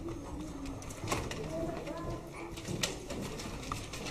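Quiet room with faint, scattered low voices and a few sharp knocks from a handheld microphone being handled and passed between people, the clearest about a second in and near three seconds.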